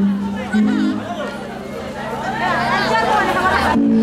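Music with long held low notes, under the chatter and calls of a large crowd. The voices swell about halfway in and cut off abruptly just before the end.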